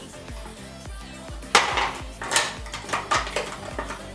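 Clicks and clatter of a plastic packet of sponge-tipped makeup applicators being handled and opened, with three sharper knocks spread through the middle of the sound.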